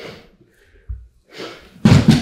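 Grapplers moving on training mats: a soft breath at the start, a short dull thud about a second in, then a rustle and a louder thump of a body landing on the mat near the end.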